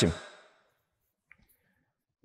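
A man's voice ends a word and trails off, then near silence with one faint click about a second and a half in.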